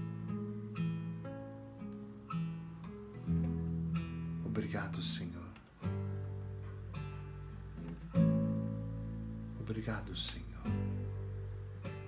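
Acoustic guitar played with plucked, arpeggiated chords, bass notes changing about once a second. The guitar is slightly out of tune, fitted with new strings.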